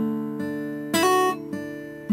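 Guitar playing a D chord picked fingerstyle, with a hammer-on to F sharp on the high E string, second fret. Several notes are picked over the ringing chord, with a brighter, louder strum about a second in.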